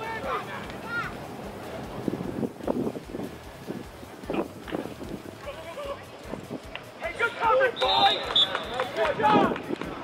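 Players and sideline voices shouting across a flag football field during a live play, loudest near the end, with a short high referee's whistle about eight seconds in.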